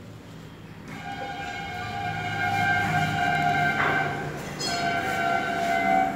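Train horn sounding in two long blasts: the first starts about a second in, swells and holds for over three seconds, and the second follows after a short break near the end.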